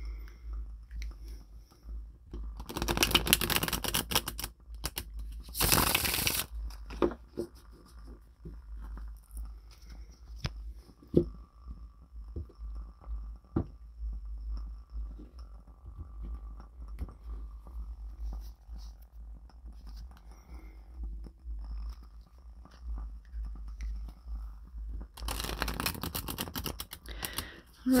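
Tarot cards being shuffled in short bursts, two early on and a longer run near the end, with soft taps of cards being laid down on a cloth-covered table in between. A low hum runs underneath.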